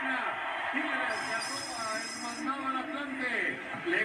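A referee's whistle blown once as the final whistle ending the match: one steady high blast of about a second and a half, starting about a second in, heard through a television's speaker over the broadcast's voices.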